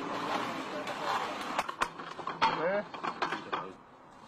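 Steel linkage of an orange manhole-frame repair rig working: a mechanical rumble, then a run of sharp metallic clicks and knocks in the middle, dying away near the end.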